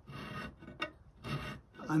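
Bastard file rasping across the metal edge of a negative carrier's opening, in a few strokes with short gaps between them.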